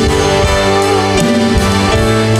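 Live worship band playing a slow song with guitar and keyboard chords; the chord changes about a second in.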